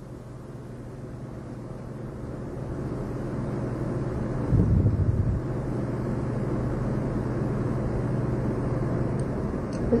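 A steady low hum that grows slowly louder, typical of the electrical hum and background noise of an old film or tape recording. A brief, louder low sound comes about halfway through.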